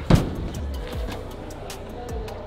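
Background music with a steady beat, and a single heavy thump just after the start: a climber dropping off the wall onto the bouldering crash mat.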